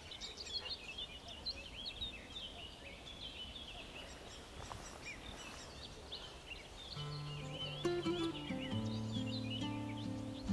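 Small songbirds chirping and singing in the treetops, a busy scatter of short, high, quick calls. About seven seconds in, music with held low notes comes in under them.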